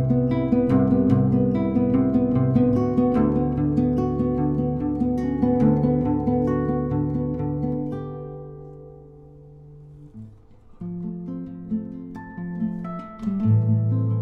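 Solo guitar playing a slow piece of single picked notes that ring on over one another. About eight seconds in the playing fades almost to nothing, then soft notes resume and it fills out again near the end.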